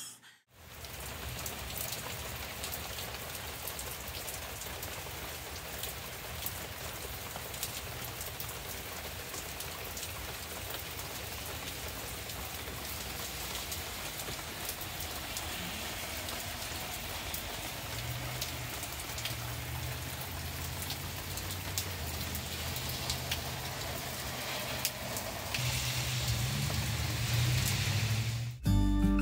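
Steady rain falling on pavement, lawn and plant leaves, an even hiss with scattered drop ticks. A low rumble comes and goes in the second half and is loudest near the end.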